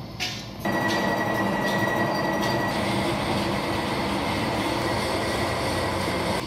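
A steady mechanical running noise, like an engine or other machinery, starts abruptly about half a second in. A thin high whine runs through its first couple of seconds.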